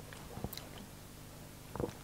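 Faint wet mouth sounds, small lip smacks and tongue clicks, of someone tasting a mouthful of beer. A few short clicks come about half a second in and another near the end.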